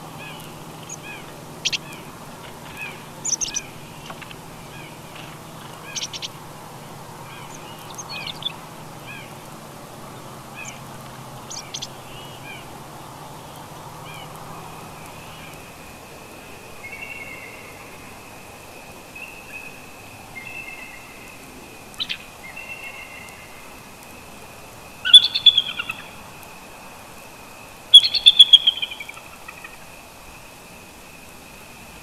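Small birds chirping in short repeated calls, then two loud bursts of a bald eagle's high chattering calls near the end, about three seconds apart.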